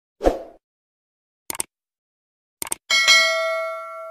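Subscribe-button animation sound effect: a short pop, a click about a second and a half in, a quick double click, then a bell ding that rings on and slowly fades.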